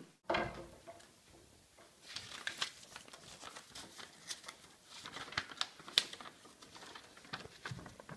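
A sheet of paper being unfolded by hand, with irregular crinkling and crackling, preceded by a short bump of handling noise at the start.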